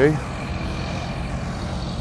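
Steady low outdoor rumble with no distinct events, the tail of a spoken word at the very start.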